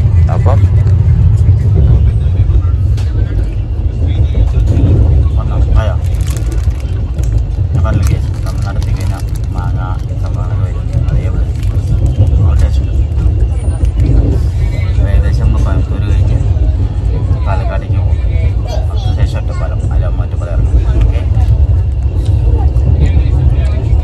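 Passenger train running, heard from inside a sleeper coach: a loud, steady low rumble of the carriage on the track, with faint voices of other passengers.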